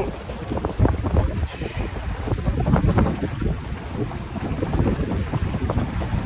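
Wind buffeting the microphone over a small boat's outboard motor running, a gusting, uneven rumble.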